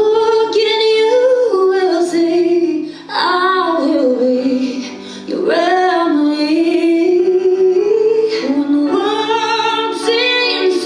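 A song with a woman singing long, held notes without clear words, dropping away briefly about three and five seconds in.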